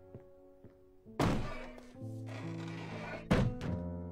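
A heavy door slams shut about a second in, with a second thud about two seconds later, over quiet background music.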